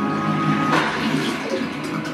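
DTS demo clip soundtrack played over home-theater speakers: sustained music with a held tone that gives way to a rushing whoosh under a second in. The receiver is taking the DTS 5.1 core rather than DTS-HD.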